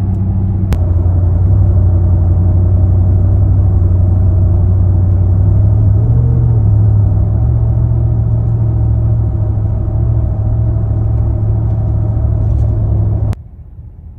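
In-cabin drone of a Nissan Y62 Patrol's V8 on light throttle in cold weather, a steady low hum whose pitch steps up for a couple of seconds around the middle. This is the rev fluctuation on a hill that the owner puts down to transmission oil not yet hot enough. Near the end it cuts off sharply to a quieter cabin hum.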